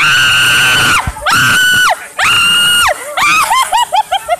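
A woman screaming on an amusement ride: three long, high-pitched screams of about a second each, then a quick run of short yelps near the end.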